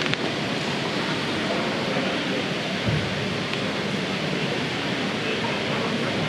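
Steady, even hiss of background hall noise with no distinct events, apart from a brief low knock about three seconds in.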